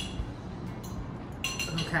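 Forks clinking against ceramic plates: one sharp clink at the start and another, with a brief ring, about a second and a half in.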